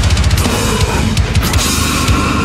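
Deathcore drumming on a kit with Meinl cymbals, over heavy metal guitars: a fast, continuous run of double-kick bass drum strokes, with a quick cluster of sharp cymbal and snare strikes about a second in.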